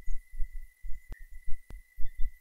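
Low, irregular rumbling thuds a few times a second under a faint steady high-pitched tone, with two sharp clicks about half a second apart in the second second.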